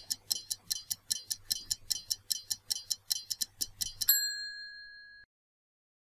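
A stopwatch-ticking sound effect counts down the answer time at about five ticks a second. About four seconds in, a single bright ding marks time up; it rings for about a second and then cuts off.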